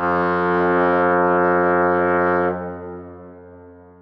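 A single long, low horn note, steady in pitch, starting abruptly, held loud for about two and a half seconds and then slowly dying away.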